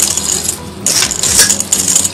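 Dry puffed rice (muri) and peanuts being tossed and stirred in a stainless steel bowl, grains rattling and rustling against the metal in irregular bursts, loudest from about a second in.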